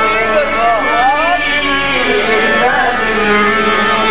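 Qawwali singing: a voice sings gliding, ornamented phrases over steady, held harmonium notes.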